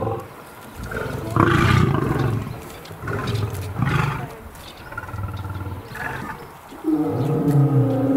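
Lions roaring: a string of deep calls about a second apart, ending in a longer, louder call.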